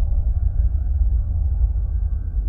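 Deep, low cinematic rumble: the tail of a trailer boom, slowly fading, with a faint steady tone above it.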